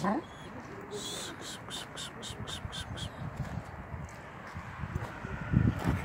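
Footsteps crunching on a gravel track, a quick regular run of about four strokes a second for a couple of seconds, with handling rumble. A short, loud, falling animal cry comes at the very start.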